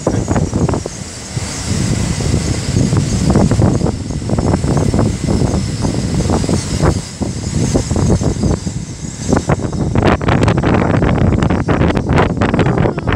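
Great Western Railway Class 800 Hitachi train running along the track, its rumble mixed with heavy wind buffeting on the microphone.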